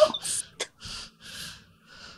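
A person laughing breathlessly: a short voiced laugh at the start, then a string of breathy, gasping exhalations, about two a second, fading away.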